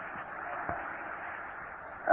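Steady background hiss of an old lecture tape recording, with one faint click under a second in.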